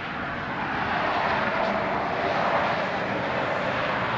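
Rushing engine noise from a passing motor, swelling over the first second or so and then holding steady.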